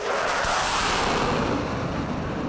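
A burst of flame: a rushing noise that sets in suddenly and holds steady.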